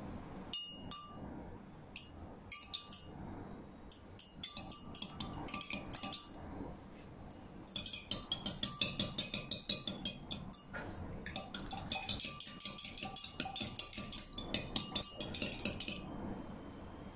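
Metal spoon stirring paint into a glass of water, clinking rapidly against the glass in several spells with short pauses between them. Some strikes leave the glass ringing briefly.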